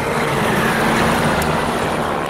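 Loud engine noise of a passing vehicle: a steady rush with a low drone underneath.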